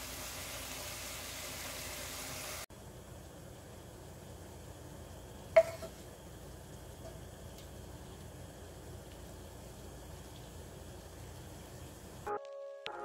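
Ground beef and sliced bitter melon sizzling softly in a frying pan for the first couple of seconds. It cuts off sharply into quieter room tone, with a single sharp click about five and a half seconds in.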